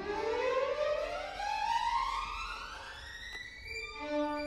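Solo violin playing one long ascending run that climbs smoothly from the low register to high over about three and a half seconds.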